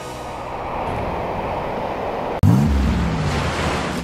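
Breaking surf, a steady rushing wash of waves with some wind on the microphone. About two and a half seconds in it is cut off by a sudden, louder low sound that swoops up and then sinks slowly in pitch over a rush of noise.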